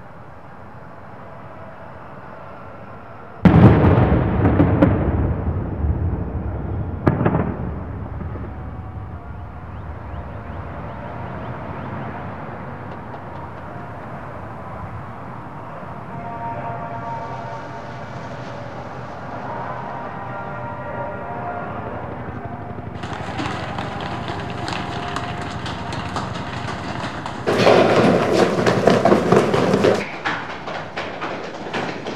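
A loud explosion about three seconds in, its rumble dying away over several seconds, and a second, sharper blast about seven seconds in. Near the end comes another loud stretch of crashing noise.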